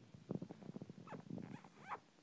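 Kitten purring close up, a rapid uneven run of pulses, with two short rising squeaks around a second in and near the end.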